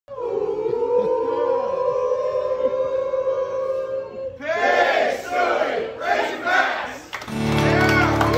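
Restaurant crowd yelling and cheering: a long, held yell for about four seconds, then a burst of overlapping shouts and cheers. Music comes in shortly before the end.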